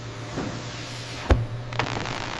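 Heated press hissing steam as it comes down onto a snake-skin hide, over a steady low hum, with one heavy thump about two-thirds of the way in and a couple of light clicks after it.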